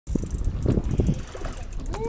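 Wind buffeting the microphone on a boat at sea, a heavy low rumble, with low, indistinct voices underneath.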